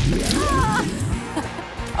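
Thick cheese sludge dumped onto a person's head, a sudden wet splash at the start, over background music.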